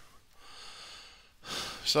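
A man breathing audibly between sentences: a long soft breath, then a shorter, sharper intake just before he starts speaking again near the end.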